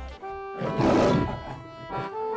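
A lion's roar lasting about a second, in the middle, over steady background music.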